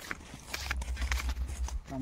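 Irregular light clicks and knocks over a low rumble that swells in the middle: handling noise as the phone is moved.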